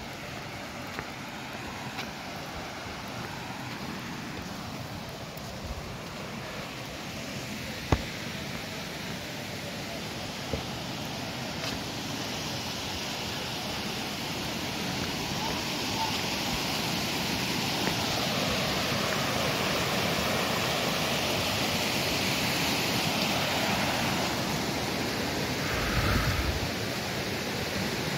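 Rushing water of a fast mountain stream, a steady hiss that grows louder through most of the stretch and eases slightly near the end. A single sharp knock about eight seconds in.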